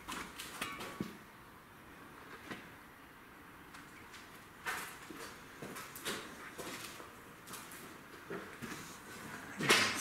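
Irregular footsteps and scuffs on a concrete floor with occasional light knocks, fairly quiet, the loudest just before the end.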